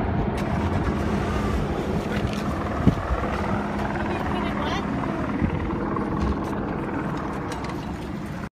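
A steady engine hum over outdoor street noise, with faint voices in the background and a short knock about three seconds in.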